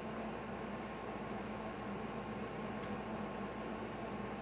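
Steady, even hiss with a faint low hum, unchanging throughout and with no distinct events: background room noise.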